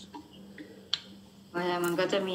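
A pause in speech with a single sharp click about a second in, then a woman's voice starts speaking about halfway through.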